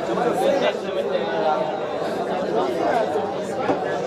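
The din of many men studying Torah aloud at once in a yeshiva study hall (beit midrash): a steady, dense babble of overlapping voices debating in pairs, no single voice standing out, in a large room.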